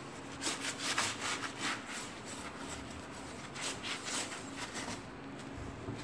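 A sponge rubbing and scrubbing across grimy window glass in a few irregular strokes, working off grease left to soak in a homemade degreaser.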